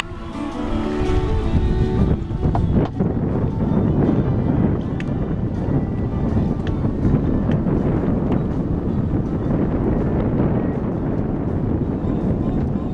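Wind buffeting the microphone aboard a sailboat under sail, a steady low rumble with a few faint clicks. Music fades out in the first two seconds.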